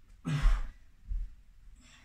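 A heavy, breathy exhaling sigh with a little voice in it about a quarter second in, a sign of exertion during a bodyweight exercise. A dull low thump follows about a second in.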